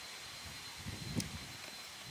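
Quiet outdoor ambience: a faint steady hiss, with a soft thump and a short click a little after a second in.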